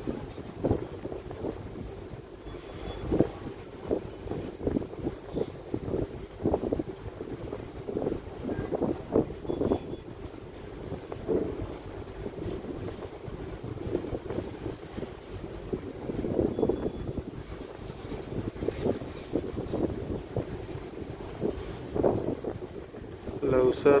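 Wind buffeting the microphone on the open deck of a passenger ship under way, in irregular gusts.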